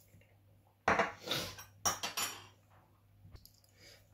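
Small ceramic dishes clattering: a sudden knock with a short rattle about a second in and another around two seconds, then a couple of faint clicks near the end.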